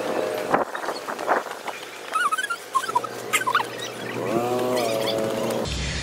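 Fast-forwarded walking audio. Quick clicks like sped-up footsteps are followed by short high-pitched chirps and a held squeaky tone near the end, sounds raised in pitch by the speed-up.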